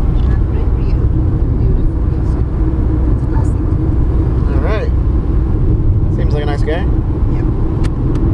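Steady road and engine rumble inside a moving car's cabin. A short gliding vocal exclamation comes about halfway through, a brief voice follows, and two sharp plastic clicks near the end fit a CD jewel case snapping shut.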